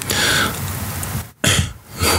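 A man's non-speech vocal sounds: a breathy, noisy burst at the start, then a short low voiced sound about one and a half seconds in, much like a throat-clearing.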